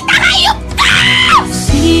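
A woman's long scream that falls in pitch at the end, acted in a radio drama over dramatic underscore music. Music with a deep bass line comes in near the end.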